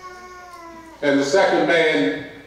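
A held, pitched voice-like sound falling slightly in pitch, then a louder, wavering voice about a second in.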